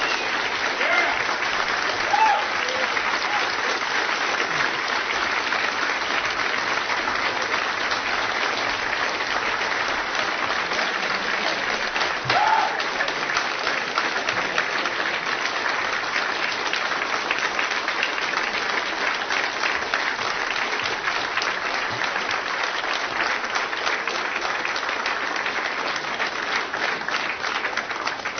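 Audience applauding steadily for a long stretch, with a couple of short voices from the crowd rising above it, about two seconds in and near the middle.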